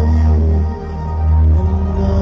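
Live hip-hop concert music through a festival PA: a heavy, sustained deep bass under sustained chords. The bass drops out briefly just before a second in.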